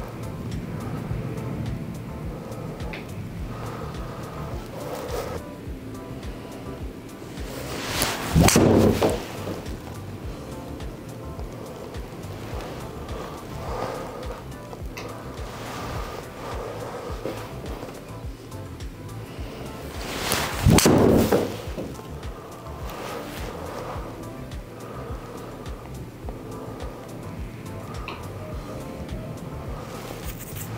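Background music, broken twice, about eight seconds in and again about twenty-one seconds in, by a loud golf shot: a TaylorMade Qi10 three wood swishing through and cracking into the ball, with the ball hitting the simulator screen a moment later.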